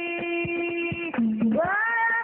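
A male singer holds one long note, then slides upward into a new phrase near the end, over regular strokes of rebana frame drums.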